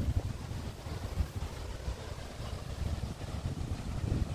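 Wind buffeting the microphone: an uneven low rumble that rises and falls, with no other clear sound.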